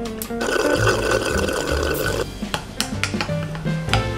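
A thick banana and peanut-butter protein smoothie sucked up through a straw, a noisy slurp lasting about two seconds starting just after the beginning, over background acoustic guitar music.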